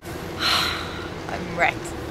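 A person's breathy gasp about half a second in, then a short rising vocal sound near the middle, over a steady low hum.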